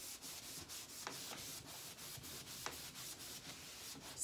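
Yellow foam buffer pad rubbing in quick circles over a liming-waxed painted wood panel: a faint, repeated rubbing as the excess wax is wiped off.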